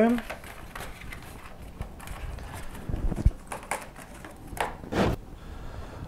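Small plastic transport screws being unscrewed by hand from a cardboard packaging platform, with the toy's plastic remote and the cardboard being handled: irregular clicks, rustling and a few light knocks.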